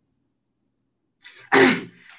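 Dead silence for over a second, then a short, breathy vocal burst from a man, about half a second long, just before he starts to speak.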